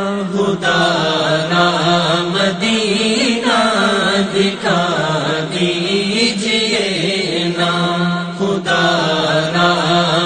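Naat singing: a voice drawing out long, wavering melismatic notes without clear words, over a steady low drone.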